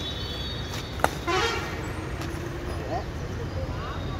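Badminton racquet striking a shuttlecock once, a single sharp crack about a second in, followed by a short shout from a player. A steady outdoor background hum runs underneath.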